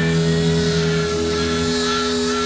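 Live psychedelic rock music: a long held chord with a sustained, wavering lead guitar line above it that slowly drifts downward.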